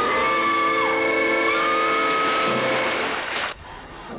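A woman screaming in terror, one long scream, over a loud sustained orchestral chord from a film score; both cut off about three and a half seconds in.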